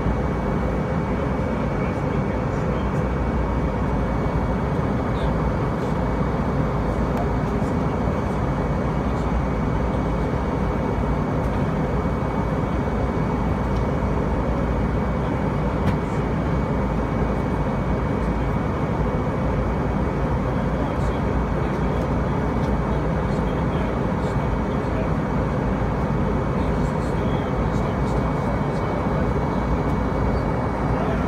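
Steady airliner cabin noise during descent: engines and rushing airflow heard from inside the cabin, deep and even, with a thin steady high whine on top.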